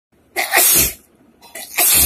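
A woman sneezing twice, uncovered, loud wet sneezes about a second apart, each a short catch of breath followed by a sudden loud burst.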